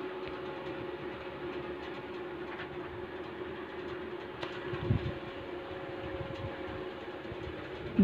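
A water buffalo being hand-milked, with faint irregular squirts and pail sounds, over a steady mechanical hum. A single thump about five seconds in.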